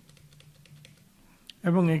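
Computer keyboard typing: a quick run of faint, light keystrokes as characters are entered, stopping about one and a half seconds in.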